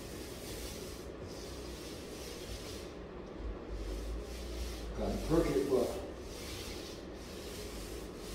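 Paint roller on an extension pole rolled back and forth across a plaster ceiling, a repeated hissing, sticky rub with short pauses between strokes. A short pitched sound comes in about five seconds in.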